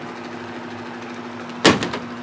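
A small ball hitting a toy basketball hoop as a shot scores, a sharp knock with a brief rattle about three-quarters of the way in, over a steady low hum.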